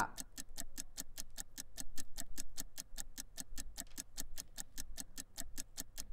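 Rapid, even clock-like ticking, about seven ticks a second: the countdown-timer sound effect that runs while an on-screen countdown counts down.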